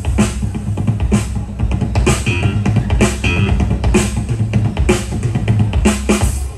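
Live rock band of electric guitars, bass guitar and drum kit playing the instrumental opening of a song, a steady beat with strong accents about once a second.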